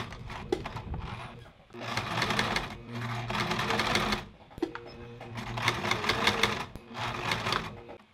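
Electric home sewing machine stitching in two short runs of about two seconds each, with a pause between, as it tacks the end of a rolled fabric wrap around a wire nose piece.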